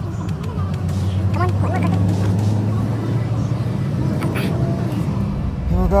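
Steady low drone of a sleeper bus's engine and road noise, heard from inside the cabin.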